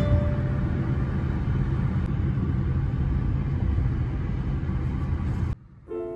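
Steady low road and engine rumble heard from inside a moving taxi, cutting off suddenly near the end.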